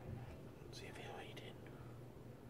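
A man whispering briefly, about a second in, over a faint low steady hum.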